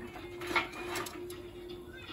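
Small kindling fire on a fireplace grate crackling, with a few sharp pops about half a second and a second in, over a faint steady low hum.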